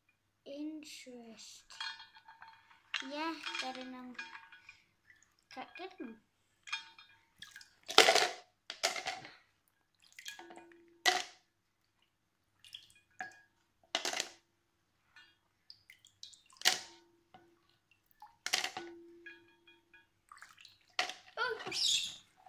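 Plastic clothes pegs being lifted out of a glass bowl of water and dropped into a plastic tub: a series of separate sharp clatters and knocks with some water splashing. Brief voices are heard in the first few seconds.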